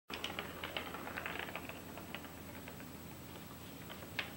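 Sphynx cat batting at a ball inside a plastic circuit track toy: a quick run of light plastic clicks and taps in the first two seconds, thinning to a few scattered ticks.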